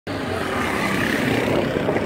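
Motorcycle engine running as the bike approaches, growing a little louder.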